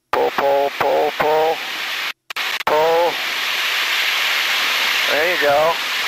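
Wordless vocal exclamations over an aircraft intercom: four short sounds at a steady pitch, then two drawn-out rising-and-falling ones. A steady hiss of cockpit noise runs underneath, and the intercom cuts out for a moment about two seconds in.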